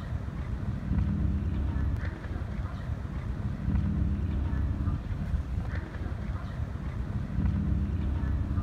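Wind buffeting the microphone in slow gusts, over the low rumble of a ferry's engines.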